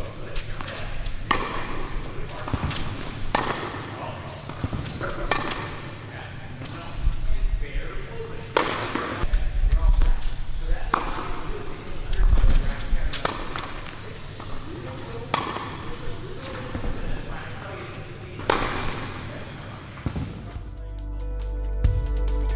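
Tennis balls struck by racquets and bouncing on an indoor hard court during a baseline rally, a sharp hit about every one to two seconds, each echoing in the large hall. Music comes in near the end.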